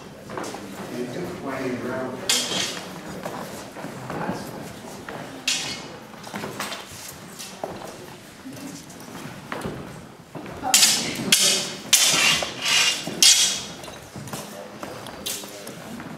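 Two fencers sparring with longswords on a wooden floor: sharp strikes and scuffs now and then, bunched into a quick run about eleven to thirteen seconds in, over low voices.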